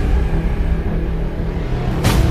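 A deep, steady rumble under background music with held tones.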